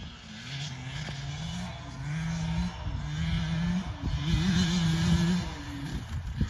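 A 2022 KTM 150 SX two-stroke dirt bike accelerating across the field in four rising pulls of engine pitch, each cut short before the next. It grows louder as it comes closer, then eases off near the end.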